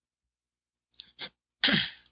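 A man's short, sharp burst of breath through the nose and mouth near the end, after two faint mouth sounds about a second in. Before these it is near silent.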